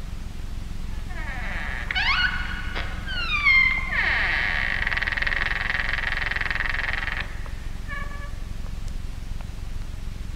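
A cat yowling: rising cries about two seconds in, then falling cries that run into one long held cry of about three seconds, with a few short faint calls after it.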